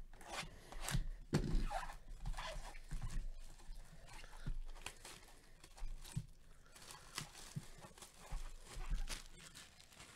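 Plastic shrink-wrap being torn and crinkled off a sealed trading-card box by hand: irregular crackling and rustling, loudest about a second and a half in and again near the end.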